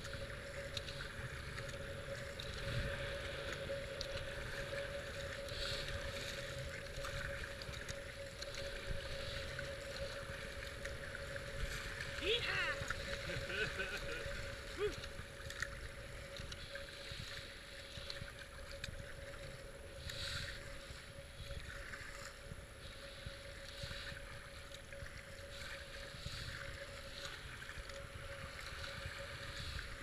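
Kayak paddle strokes splashing in a regular rhythm over the steady rush of fast, flood-high river water, with wind on the microphone and a faint steady hum. About halfway through comes a brief sweeping, falling sound.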